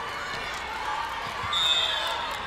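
Volleyball gym between rallies: players and spectators calling out in a big hall, a dull ball thud, and a short referee's whistle blast near the end.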